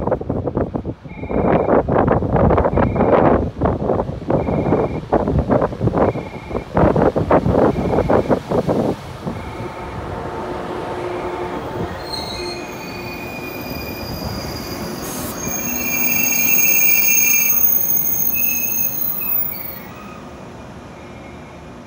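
Green JR 113 series electric train running along the platform, with loud rattling and squealing wheels for the first half. A steadier running drone with high tones follows, and it swells near the end as the train pulls out.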